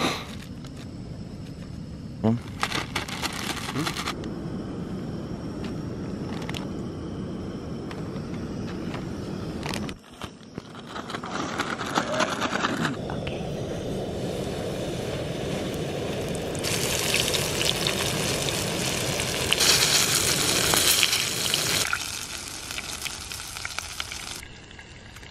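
A plastic zip-top bag crinkling and rustling as diced meat is shaken in it with flour and seasoning. The shaking comes in bouts, the loudest a long stretch near the end, over a steady background hiss.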